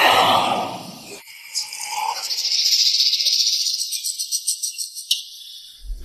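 A short rushing sound at the start, then a high, shaker-like rattle in the background music, lasting about four seconds and fading before the speech returns.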